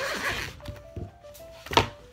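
Headphone hard case being opened: a short rub at the start and a soft thunk about a second in, over a simple tune of background music.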